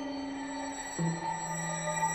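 Contemporary chamber music for tenor saxophone, electric guitar, cello and electronics: slow, sustained tones over a bed of steady high electronic-sounding tones, with the held note giving way to a lower one about a second in.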